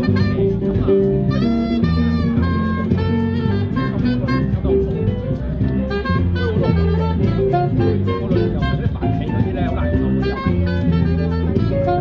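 Live jazz trio playing: a saxophone carries the melody over an upright double bass and keyboard.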